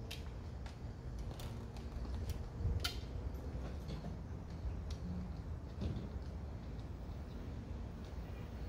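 Outdoor background noise: a steady low rumble with scattered faint clicks, the sharpest a little under three seconds in.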